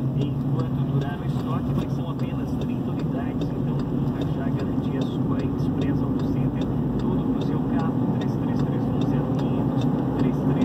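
Steady low drone of a car being driven: engine and tyre noise heard from inside the cabin.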